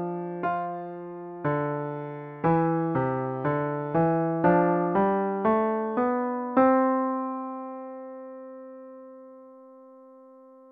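Piano playback of a two-voice counterpoint exercise, with a moving bass line under a slower cantus firmus. Notes are struck about every half second until a final two-note chord about two-thirds of the way through, which is held and slowly fades.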